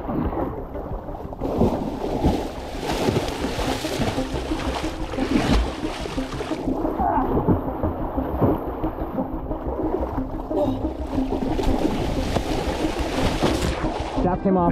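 A giant bluefin tuna thrashing on a gaff at the boat's side, its tail slamming the water: heavy, continuous splashing and spray with repeated sharp slaps.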